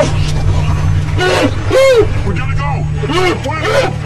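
Men's voices letting out short, excited cries, four times, each rising and falling in pitch, over the steady low drone of a car engine.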